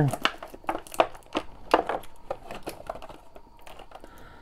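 Thin clear plastic toy packaging crinkling and clicking as hands flex it to pop a small action-figure blaster out of its blister tray. The crackles are densest in the first couple of seconds and thin out toward the end.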